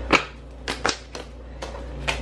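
Tarot cards being handled and laid down on a wooden tabletop: a sharp tap just at the start, then three lighter clicks.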